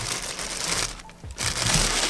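Black plastic bag crinkling and rustling against the rear window glass, a dense crackly rustle that drops away briefly about a second in.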